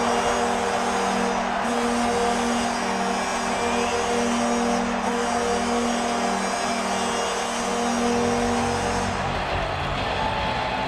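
Arena goal horn sounding in long steady blasts over a cheering crowd, marking a home-team goal in ice hockey. The horn stops about nine seconds in.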